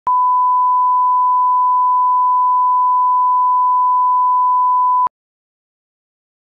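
A 1 kHz line-up test tone played with broadcast colour bars: one steady, loud pure tone that cuts off suddenly about five seconds in.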